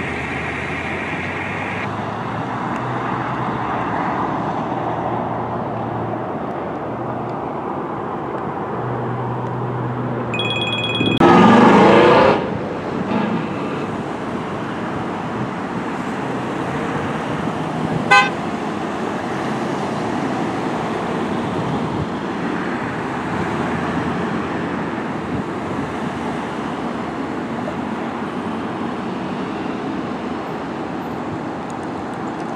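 Road traffic running past steadily, with one loud vehicle horn blast lasting about a second, around eleven seconds in, and a short horn toot about seven seconds later.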